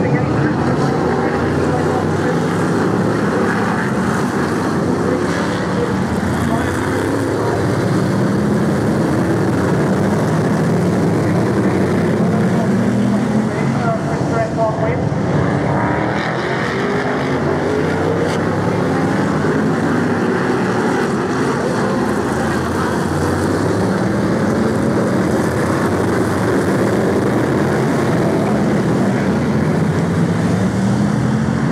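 Several BriSCA F1 stock car V8 engines racing round a short oval, loud and continuous, their pitch rising and falling as the cars accelerate down the straights and lift for the bends.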